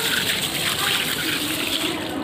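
A steady rushing noise, like water gushing.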